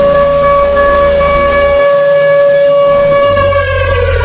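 A long, steady siren-like tone with strong overtones that starts to fall in pitch near the end, over low bass notes that change in steps.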